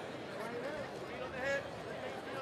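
Crowd of fight spectators talking and calling out, with one voice shouting briefly about one and a half seconds in.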